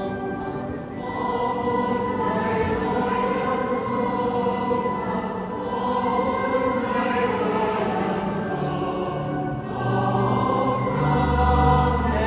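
A choir singing church music during Mass, in long held notes that shift slowly in pitch. Deep low notes join about ten seconds in.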